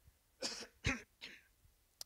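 A man clears his throat with three short, rough coughs in quick succession.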